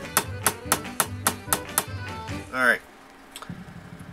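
Claw hammer striking a hardened steel Allen-head screw held between the fingers, about four quick blows a second for nearly two seconds, each with a short metallic ring. The screw is being hammered onto a tapered Torx screw head to shape it into a makeshift driver bit.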